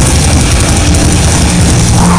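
A heavy metal band playing live: a loud, dense, unbroken wall of guitars, bass and drums.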